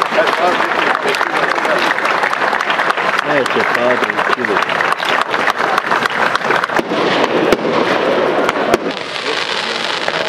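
Crowd applauding, with sharp cracks of firecrackers going off and voices among the crowd.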